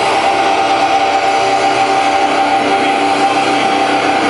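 Distorted electric guitar through an amplifier stack holding one loud sustained note, with no drums underneath.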